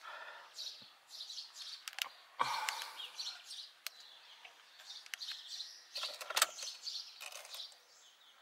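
Faint, scattered bird chirps, with a few sharp clicks in between.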